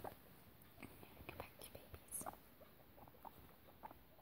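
Faint, scattered short clicks and soft rustles from guinea pigs moving about on a fleece blanket, with a slightly louder sound about two seconds in.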